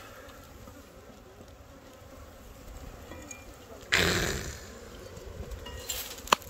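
Faint buzzing of bees from a wild colony in a hollow tree that is being opened for its comb. About four seconds in there is a short, loud scraping rustle.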